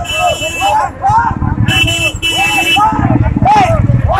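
A crowd of voices chanting a slogan in a repeated rhythm over the running engines of a slow vehicle procession, with a horn sounding for about a second near the middle.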